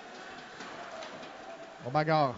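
Faint, steady hockey-arena ambience: a low background murmur of the rink and crowd, with no distinct impacts, until the announcer's voice comes back in near the end.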